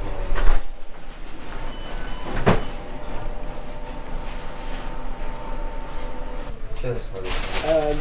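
Fast-food restaurant background: people talking in the background, a sharp click about half a second in and a knock about two and a half seconds in, with a steady faint tone for a few seconds in the middle.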